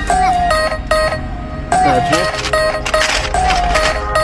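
Background music with a repeating melody, and a brief voice about two seconds in.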